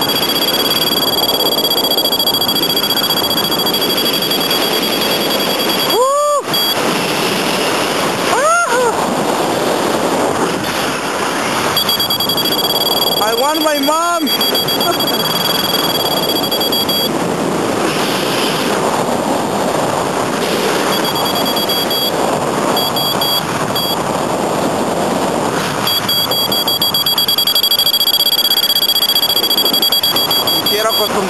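Wind rushing over the microphone during a paraglider flight. A steady high electronic tone, typical of a flight variometer, comes and goes in stretches of a few seconds, and three quick rising-and-falling whoops sound about six, eight and fourteen seconds in.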